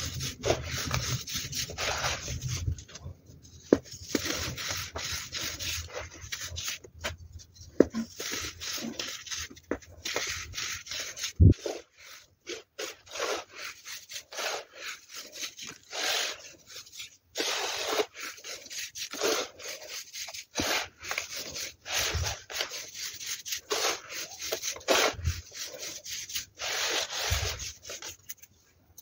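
Hands crushing, raking and rubbing baking soda powder: a crunchy, scratchy rustle in short irregular bursts, sped up, with a few sharp clicks, the loudest about eleven seconds in.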